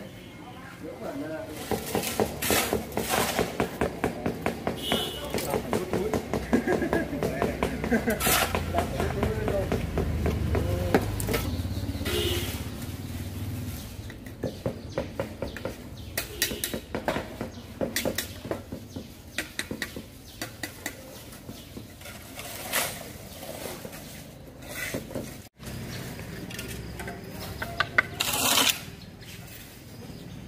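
Indistinct voices in the background, with scattered sharp taps, knocks and scrapes of hand tools working on a concrete column top.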